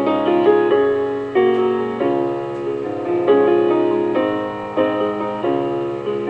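Slow piano music with no singing: chords and notes struck every half second to a second and left to ring out.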